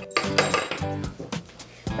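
Steel nails clinking against each other as a handful is held and fitted onto a balanced nail, several light clinks, over background music.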